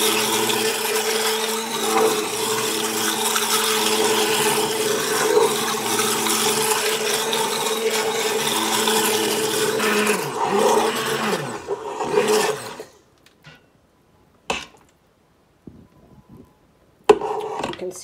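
Stick blender running steadily in raw soap batter, blending it to trace. It is switched off about twelve seconds in, followed by a single sharp knock.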